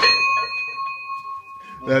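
A high ringing tone with several overtones, fading away over about two seconds, the highest overtones dying out first.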